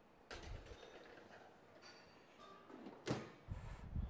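Oven door and metal roasting tin being handled in a commercial kitchen: a clatter about a third of a second in, then a sharp metallic knock near three seconds followed by a few dull thumps.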